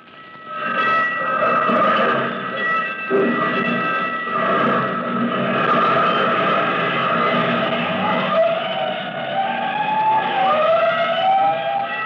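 Radio-drama sound effect of fire engine sirens, several wailing together at steady pitch after swelling in at the start, with a siren winding up in pitch near the end.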